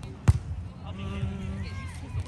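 A single sharp smack about a third of a second in, with voices talking in the background.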